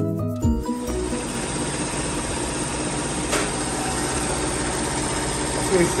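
Background music cuts off within the first second, giving way to a hydro-dip tank being filled with fresh water: a steady rush of churning water with a machine hum under it.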